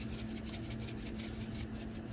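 Salt shaken from a shaker in quick, evenly repeated shakes over browned ground beef in a cast-iron skillet, with a steady low hum underneath.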